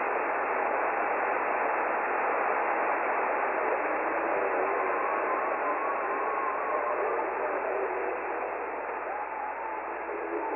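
Shortwave radio static: a steady, muffled hiss, with faint wavering whistle-like tones drifting in about four seconds in.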